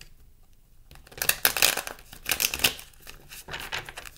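A deck of tarot cards being riffle-shuffled by hand: a rapid run of papery flicks from about a second in until about three seconds in, then softer handling of the cards.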